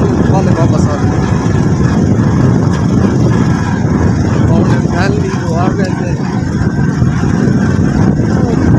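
A motorcycle running while being ridden, a loud steady low rumble with wind buffeting the microphone.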